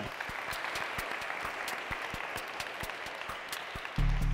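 Applause from a small group, with single hand claps standing out, greeting a player's name read out as selected.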